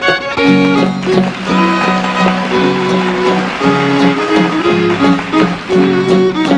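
Country fiddle playing an instrumental lead-in to a song, with guitar accompaniment.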